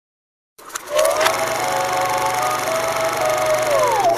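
Sound effect for an animated logo intro: a steady hiss and hum with a sustained whine over it that sags in pitch near the end, framed by a few sharp clicks about a second in and again near the end.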